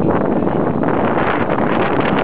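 Wind buffeting the camera's microphone, a loud, steady rushing noise.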